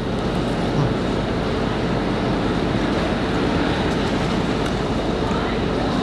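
Steady street traffic noise: the even rumble of motor vehicles on a city street.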